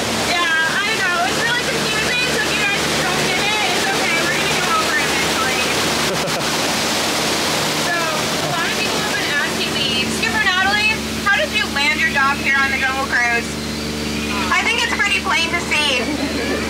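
Waterfall rushing close by, swelling to its loudest in the middle, over the steady low hum of a tour boat's motor, with people talking throughout.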